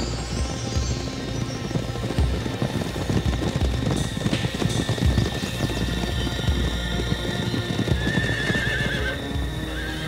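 A group of horses galloping in, hooves pounding in a dense, irregular clatter, with horses neighing, over dramatic orchestral film music with long held notes.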